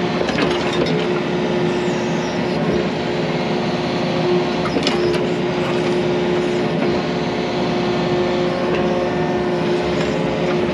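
Yanmar mini excavator's diesel engine and hydraulics running under load, heard from the cab, with a steady whine as the arm packs dirt with a compaction-wheel attachment. A few short knocks come about half a second in and again about five seconds in.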